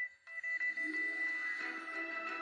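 Background music: after a brief drop near the start, held tones swell back in and carry on steadily.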